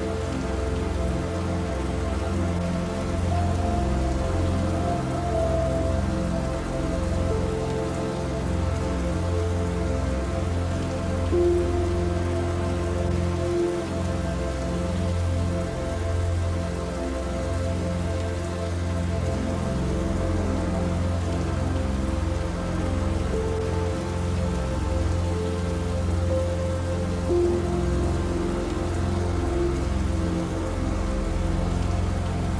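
Steady rain falling on surfaces, with soft, slow music of long held notes underneath.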